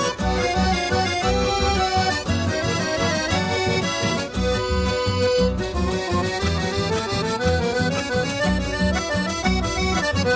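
Instrumental chamamé passage: a chromatic button accordion plays the melody over plucked and strummed guitars and a steady, pulsing bass line.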